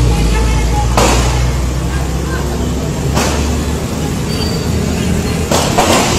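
Low rumble of a vehicle driving through city traffic, with faint voices and sudden loud rushes of noise about a second, three seconds and five and a half seconds in.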